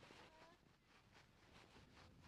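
Near silence: only faint background hiss between spoken remarks.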